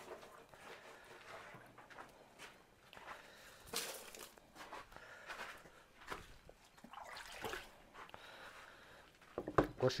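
Faint, scattered knocks and small splashes from hands washing blood off catfish testes in a plastic tub of water. A voice begins near the end.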